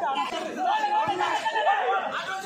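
Several voices talking and calling out over one another: chatter of players and spectators between rallies.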